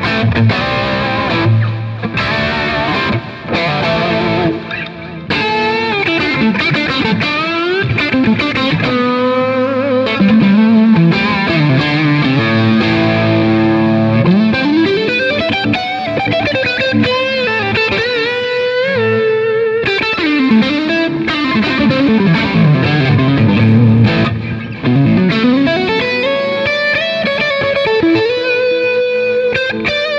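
A 2003 G&L ASAT Classic swamp-ash-bodied electric guitar played solo: a run of single-note lead lines with many string bends and slides.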